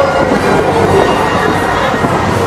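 Breakdance fairground ride running at speed: a loud, continuous mechanical rumble and rattle from its spinning cars and turning platform, with fairground music faint underneath.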